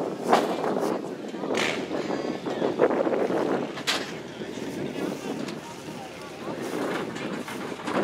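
Indistinct chatter of people talking nearby, with a few brief sharp clicks.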